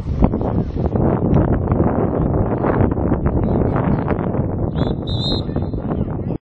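Wind buffeting the camcorder's microphone, a loud, rough rumble that runs on with no speech. About five seconds in, a brief high, steady tone sounds over it.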